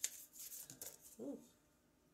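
Faint rustling and light clicks of oracle cards being handled as a card is drawn from the deck, followed about a second in by a brief murmured hum of voice.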